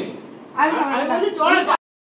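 A single sharp clink of a metal spoon against a stainless steel plate, followed by voices talking; the sound cuts out abruptly near the end.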